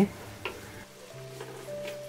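Wooden spatula stirring chopped onion and tomato frying in oil in a black pan over a low flame, with a soft sizzle and a few light scrapes against the pan.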